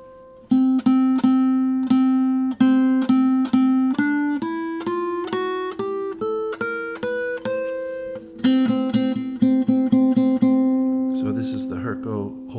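Guitar picked with a flat pick: a single note struck over and over at about three strokes a second, then a rising run of single notes, then the repeated note again.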